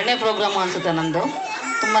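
Speech only: a woman talking steadily into a hand-held microphone.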